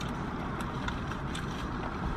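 Steady low hum and hiss of a car's interior, with no distinct events.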